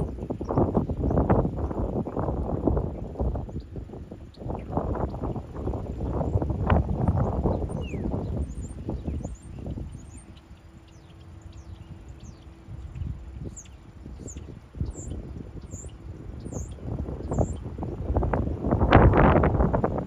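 Wind buffeting the microphone in uneven gusts, loudest near the end. Small birds chirp in short, high, repeated notes during a lull about two-thirds of the way through.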